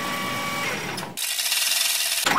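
Edited-in transition sound effect for an ad-break bumper: a dense buzzing noise with a faint held tone, which about a second in thins to a bright hiss with the low end gone.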